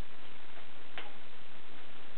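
Light clicks and crackles from hands working at the bubble wrap around a package, with one sharper click about a second in, over a steady hiss.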